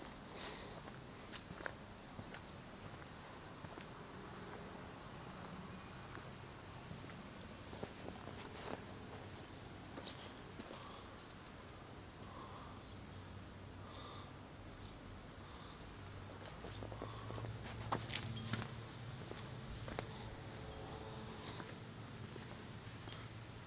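Faint outdoor insect chorus: a steady high-pitched drone with a shorter chirp repeating below it, and scattered light footsteps on a garden path.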